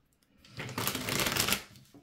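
A deck of oracle cards shuffled by hand: a quick, dense run of card flicks starting about half a second in and stopping just before the end.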